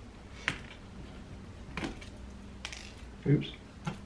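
A few light, scattered clicks and taps of a small screwdriver and tiny metal screws being handled on a desk, about four in all.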